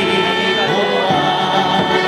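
A group of voices singing a folk song together, accompanied by a strummed acoustic guitar.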